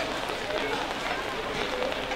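Indistinct background chatter of people talking over a steady outdoor hubbub, with no single voice standing out.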